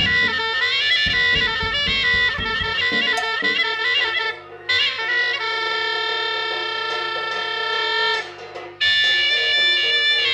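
Live free-improvised band music: a reedy wind instrument plays wailing lines and holds one long steady note about halfway through, over drums and electric guitar. The playing breaks off briefly twice.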